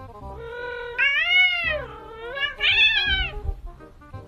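A cat yowling: a softer call, then two long, loud meows that each rise and fall in pitch.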